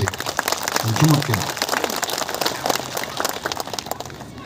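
Audience applauding, a dense patter of many hands clapping that gradually dies down toward the end.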